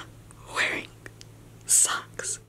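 A man whispering or breathing out two short breathy sounds, one about half a second in and one near the end, over a faint steady low hum.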